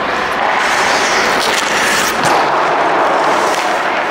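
Ice rink during hockey practice: skate blades scraping and carving the ice close by, with a few sharp knocks of sticks and pucks, all echoing in the hall.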